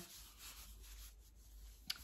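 Faint rustling of fabric being handled, with one small click near the end.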